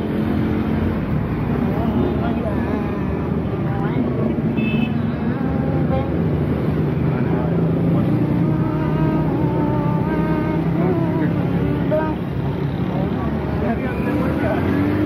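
Indistinct voices of several people talking in the background over a steady low rumble.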